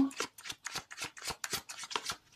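Deck of cards being shuffled by hand: a quick run of short, crisp card snaps, about six a second.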